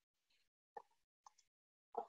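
Near silence, broken by three faint, very short sounds spread through the pause.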